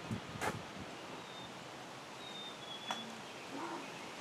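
Quiet outdoor backyard ambience with a few faint, short, high bird chirps and two sharp clicks, one about half a second in and one near the end.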